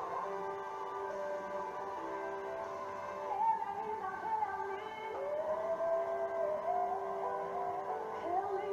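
Recorded gospel song playing: a woman's singing voice over held chords, gliding up into a long note about five seconds in.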